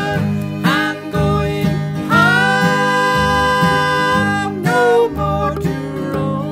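Bluegrass band playing an instrumental break: a lead melody of long held notes that slide up into pitch, over a steady strummed-guitar rhythm with a regular low beat.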